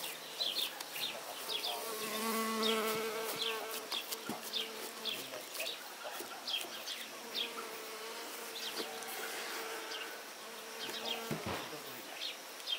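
A flying insect buzzing close by: a steady hum that comes in about two seconds in, drops away around five seconds and returns from about seven to eleven seconds. Small birds chirp repeatedly throughout, in short high notes.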